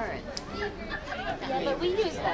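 Only speech: indistinct chatter of several people's voices overlapping.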